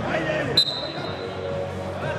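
Voices calling out in a large sports hall around a wrestling mat, with one sharp click and a brief high ringing ping a little over half a second in.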